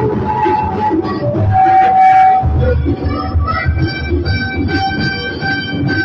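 Electronic keyboard playing a melody of long held notes, with a low rhythmic accompaniment beneath.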